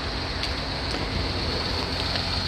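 Steady wind rumble on the microphone with a constant thin high-pitched whine running over it.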